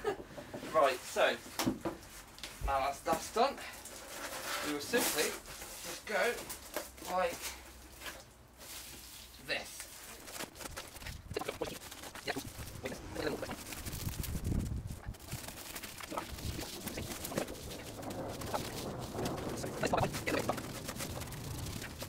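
High-pitched, garbled voice fragments in the first part, then crinkling and rustling of foil bubble insulation being handled and pressed over a wheel arch, the chipmunk-like sound of sped-up footage.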